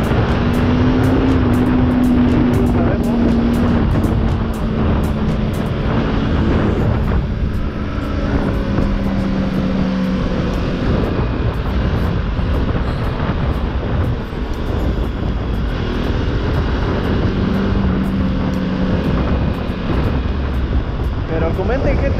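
Bajaj Pulsar RS 200's single-cylinder engine running under way, with a steady engine note that shifts in pitch about seven to eleven seconds in. Wind rushes over the microphone.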